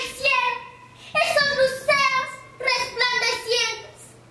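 A girl declaiming a poem in a loud, high, drawn-out voice, in several short phrases with brief pauses between them.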